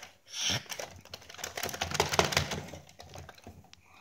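Rapid, irregular clicking and rattling of hard plastic as toy T-rex figures are handled, with a short breathy hiss about half a second in.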